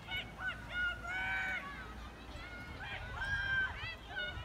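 Many short, high-pitched calls, overlapping and repeated throughout, each rising sharply at the start and then holding one pitch.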